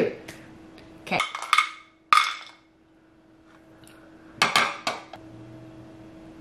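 ChapStick lip balm tubes clattering against each other and the side of a ceramic bowl as a hand picks through them, in short spells of clicks about a second in, at two seconds and again near four and a half seconds. A faint steady hum runs underneath.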